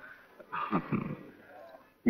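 A person's voice: one short utterance, falling in pitch, about half a second in.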